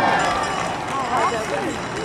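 Race commentary voice, fainter and broken, with short phrases about a second in, over a steady background of outdoor crowd noise.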